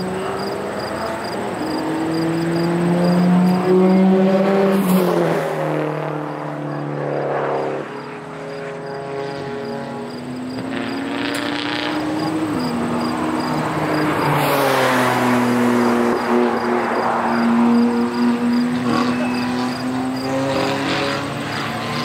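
Cars lapping a race track: engine notes rising under throttle and dropping at gear changes and lifts, with more than one car heard at once. The loudest passes come about four seconds in and again from about fourteen to eighteen seconds in.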